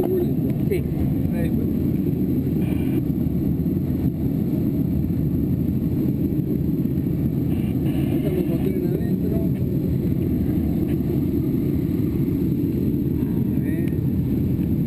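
Air rushing over a glider's canopy in flight, heard inside the cockpit as a steady low rush.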